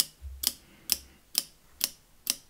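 High-voltage sparks snapping across a small gap from a fence-charger transformer's output pin to a clip lead, about two sharp snaps a second in a steady pulse. The sparks are strong enough to hear because a resonant capacitor has been added across the transformer's primary.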